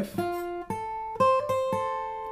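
Acoustic guitar picking out an F major triad note by note on the top three strings, ornamented by a quick hammer-on and pull-off on the first string. There are about five notes, each left to ring and fade.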